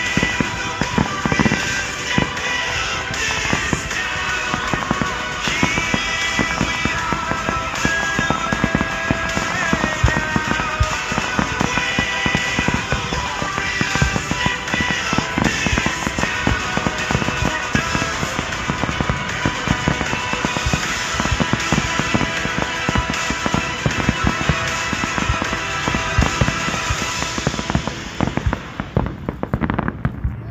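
Fireworks display: a dense, irregular run of aerial shells bursting and crackling, heard together with loud music throughout.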